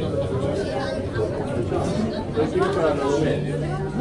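Indistinct chatter of several people talking at once, voices overlapping.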